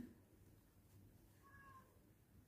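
Near silence: room tone, with one faint, brief high-pitched call about one and a half seconds in.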